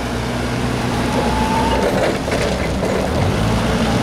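Propane-powered Nissan C4000 forklift's engine running steadily as the forklift drives across the lot, a continuous low drone.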